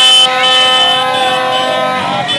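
Plastic vuvuzela blown in a long steady drone, with a shrill higher tone coming and going above it.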